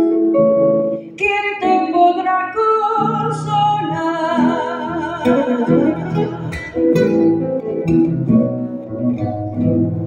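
Two acoustic guitars, one of them a nylon-string classical guitar, playing the instrumental passage of a tonada between sung verses, with plucked melodic runs over the chords.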